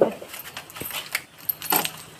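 Light metallic jingling with scattered clicks and rattles, like small metal pieces shaken together.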